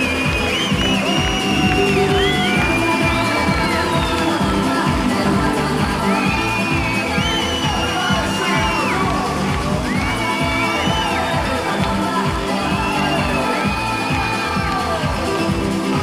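Dance music with a steady beat over a cheering crowd.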